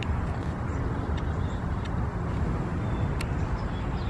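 Steady low outdoor rumble of background noise, with a few faint short high chirps and small clicks scattered through it.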